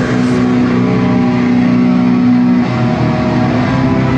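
Distorted electric guitars of a live metal band holding long sustained notes, the drums and deep bass dropped out. The held notes change about two and a half seconds in.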